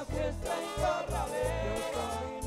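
Live Colombian accordion band music: a voice singing over accordion, drums and a bass line of short, changing low notes.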